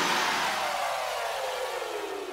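An electronic whoosh of noise that glides steadily down in pitch and fades out as the track ends.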